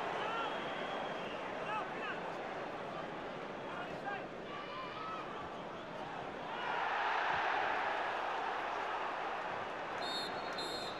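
Football stadium crowd: a steady din of many voices that swells about seven seconds in.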